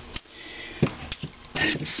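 A few light clicks and a soft knock about a second in as a Wico EK magneto is handled on a magnet charger's pole pieces, with a short breath near the end.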